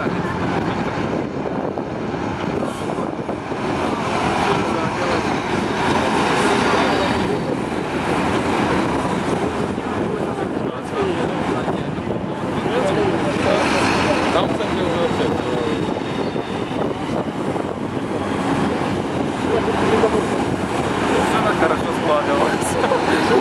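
Diesel engines of KrAZ six-wheel army trucks running as a convoy drives by at low speed, towing artillery pieces, with tyre and road noise; it grows somewhat louder near the end as a truck comes close.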